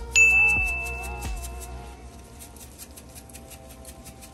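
A bell-like chime rings out about a quarter second in and dies away over about a second and a half, over soft background music with a light steady beat.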